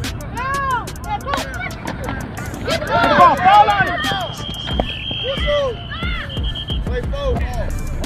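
A whistle blown in one long blast of about three seconds, starting around the middle and warbling just before it stops, over background music with a steady beat and voices.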